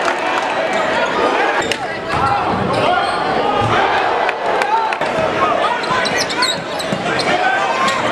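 Live basketball game in a gym: a crowd of spectators talking and shouting, with the ball bouncing on the hardwood court and frequent sharp knocks.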